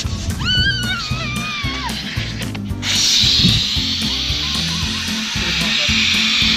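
Cola foam hissing as it sprays under pressure out of a 2-litre Diet Coke bottle from the Mentos reaction, starting about three seconds in and holding steady to the end. Background music plays throughout, with a high wavering tone in the first two seconds.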